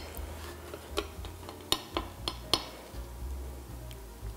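Knife and cake server cutting through a pavlova's crisp baked meringue shell: a few sharp crackles and clicks as the crust breaks and the metal meets the cake stand.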